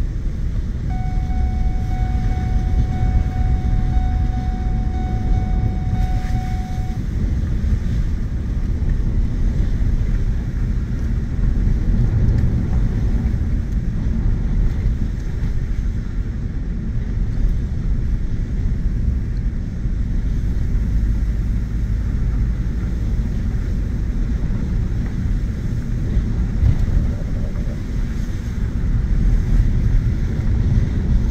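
Ford F-150 pickup driving on a dirt road, heard from inside the cab: a steady low rumble of engine and tyres on the dirt surface. A faint thin steady tone sounds over it for the first several seconds.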